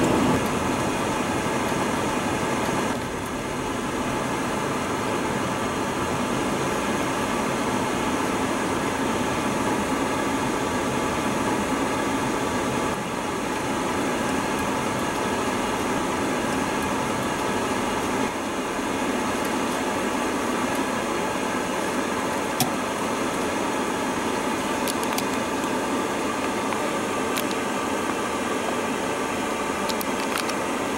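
Steady car-cabin noise from the engine, tyres and ventilation fan, with a sharp click about three-quarters of the way through and a few faint ticks after it.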